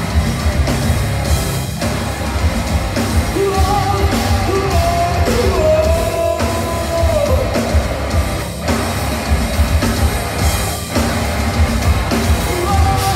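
A metal band playing live and loud: heavy drums and distorted guitars under a sung vocal, with a long held melodic line in the middle.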